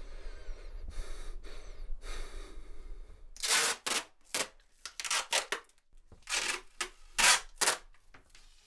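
A person breathing heavily, soft breaths about a second apart, then from about halfway through a run of louder, short, sharp hissing bursts at uneven spacing.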